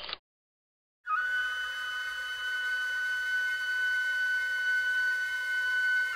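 A factory steam whistle blowing one long, steady high note, starting about a second in. Its pitch sags as it dies away at the end.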